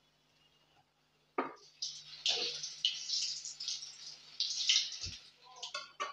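Hot oil sizzling and crackling in uneven spurts from deep-fried bread cutlets, after a short knock about a second and a half in. A dull thump comes near the end.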